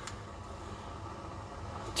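Steady low background hum with faint hiss: kitchen room tone, with no distinct event.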